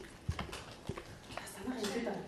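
A handful of light, sharp knocks and taps, about four spread over two seconds, amid classroom noise, with a voice coming in near the end.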